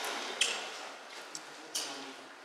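Two short, sharp clicks or taps, about a second and a half apart, over faint room noise.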